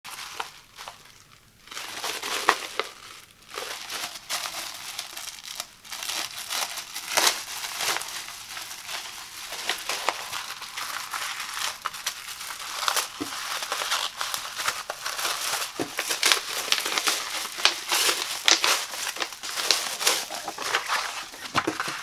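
Clear plastic shrink wrap crinkling and crackling as hands peel it off a packaged rug pad. It is fairly quiet for the first couple of seconds, then becomes a dense run of crinkles with sharp crackles.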